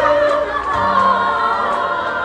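Stage musical number: several voices singing together, with sustained low accompanying notes underneath.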